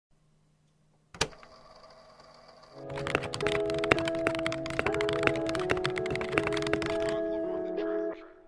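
Computer keyboard typing: a rapid run of sharp key clicks lasting about four seconds, over a soft held music chord. A single click comes about a second in.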